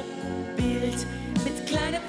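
Live band music: a slow pop ballad with electric guitar, a steady beat and a held, wavering melody line.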